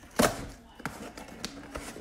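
Hands handling a cardboard shipping box: a sharp knock just after the start, a lighter click about a second in, then quiet handling noise.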